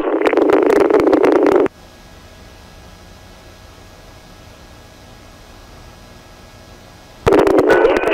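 Police radio transmission of a voice through a narrow-band two-way radio, cut off about a second and a half in. A steady low hiss follows for about five seconds, and another radio transmission begins near the end.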